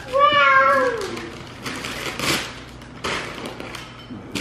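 Wrapping paper being torn off a present in a few rips. At the start, a long whine-like cry slides down in pitch over about a second; it is the loudest sound.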